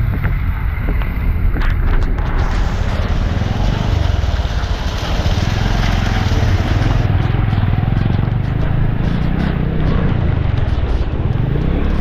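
A motorcycle's engine running steadily as it rides, under heavy wind noise on the microphone and the hiss of heavy rain.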